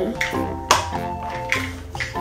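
Background music with held, steady notes and a few light percussive taps.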